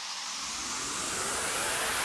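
A rising whoosh transition effect: a rushing noise that swells steadily louder.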